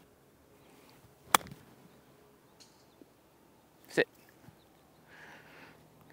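A golf club striking the ball on an approach shot from the fairway: one sharp crack about a second and a half in.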